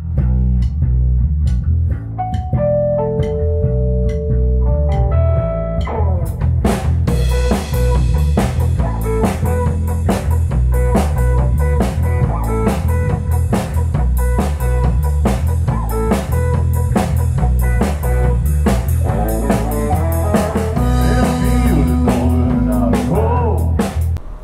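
A rock trio playing live: electric bass, electric guitar and drum kit, the bass being a 1985 Japanese-made Squier Jazz Bass. For the first few seconds the bass and guitar play over sparse drum hits with a few held guitar notes, then the full kit with cymbals comes in about six seconds in.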